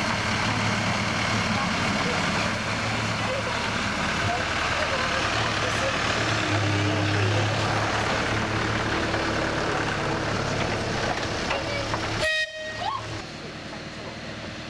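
Miniature railway locomotive running past at close range, a steady low drone that swells as it draws level. Near the end, after a sudden drop in level, a short horn toot sounds.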